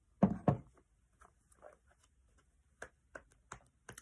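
Two loud knocks about a quarter-second apart, then scattered light clicks and rustles of oracle cards being handled.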